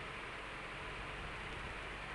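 Steady faint hiss of room tone and microphone noise, with no distinct sound standing out.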